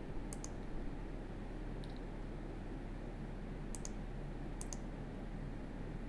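Computer mouse clicks: a few faint, sharp clicks, mostly in quick pairs of press and release, scattered through a steady low background hum.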